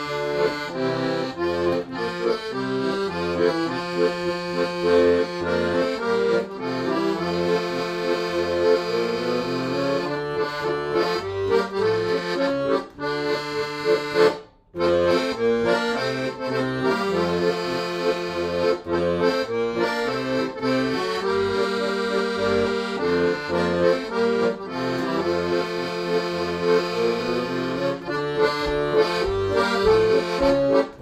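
Weltmeister piano accordion playing a tune: a right-hand melody on the keyboard over left-hand bass and chord buttons. The music breaks off briefly about halfway through, then carries on.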